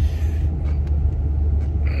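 Steady low rumble of a truck driving, its engine and tyre noise heard from inside the cab.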